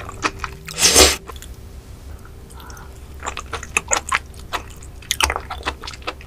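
A loud slurp about a second in as food is sucked off a spoon, then wet, clicking chewing of raw sea squirt and sea cucumber roe.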